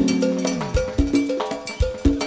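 Live Peruvian cumbia (chicha) band playing an instrumental passage without vocals. A held chord dies away in the first half second, then percussion keeps a steady beat under short, repeated melodic notes.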